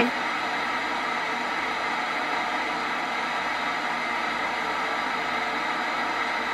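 Portable PLL radio used as a spirit box, giving a steady hiss of radio static.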